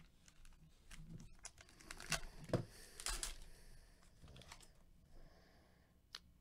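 Faint handling of glossy trading cards in gloved hands: cards flipped and slid against one another, giving soft swishes and small clicks, busiest about two to three seconds in.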